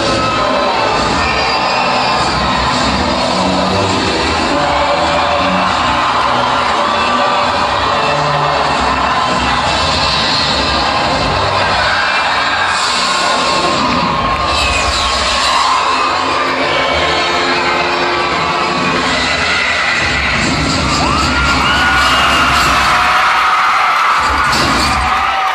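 Loud music played over a venue's sound system, with an audience cheering, screaming and whooping over it. The crowd noise swells near the end.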